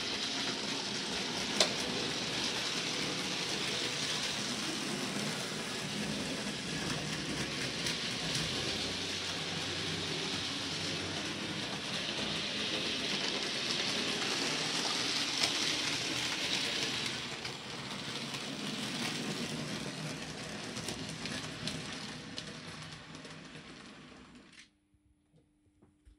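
Electric model locomotive running along the layout's track: a steady rattling whirr of its motor and wheels on the rails, with a few faint clicks. It eases off in the second half and dies away near the end.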